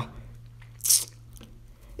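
A quick breath drawn in by the man talking, a short hiss about halfway through, over a faint steady low hum.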